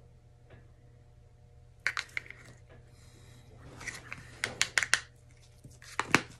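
Plastic paint cups and a stir stick clicking and clattering as they are handled and set down on the work table. There are a few clicks about two seconds in, then a quicker run of sharper clicks a couple of seconds later.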